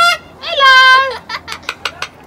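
Sulphur-crested cockatoo calling: the tail of one loud call at the very start, then a long, steady, loud call about half a second in, followed by a few short sharp sounds.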